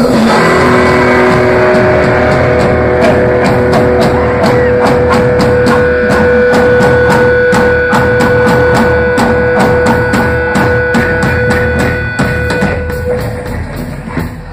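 Live rock band playing an instrumental passage: an amplified electric guitar holds one long sustained note over the drum kit. The drums hit in a steady, fast beat from about three seconds in.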